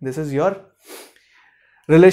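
A man's voice finishing a phrase, then a short, sharp in-breath about a second in, followed by a brief pause.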